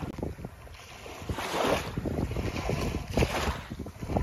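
Wind buffeting the microphone in low gusts, with small waves washing onto the beach in a couple of brief surges.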